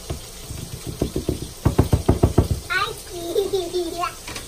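A seasoning shaker shaken over a pan: a quick run of knocks, densest and fastest (about eight a second) in the middle, lasting about two seconds.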